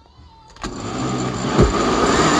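Osterizer blender switched on about half a second in, its motor spinning up and then running steadily as it liquefies chunks of chayote, onion and garlic in water.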